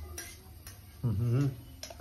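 A man eating flatbread and scrambled egg: a few soft, sharp clicks of chewing and handling the food, and a short voiced hum from him about a second in as he tastes it.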